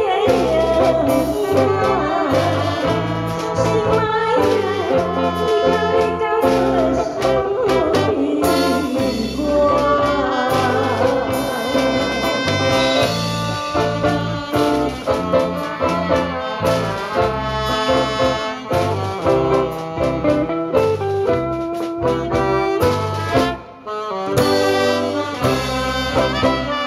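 Live band music: a brass-led instrumental interlude over drum kit and bass, with the singer's voice only at the start. About three-quarters of the way through, the band briefly drops out.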